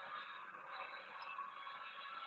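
Faint audio of a televised wrestling event playing in the background, a steady low wash with some music in it.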